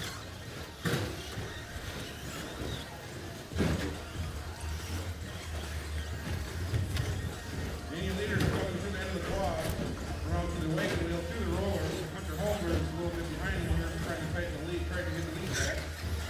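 Indoor RC short-course truck race: indistinct voices over a steady low hum. Two sharp knocks in the first four seconds come from the radio-controlled trucks on the track.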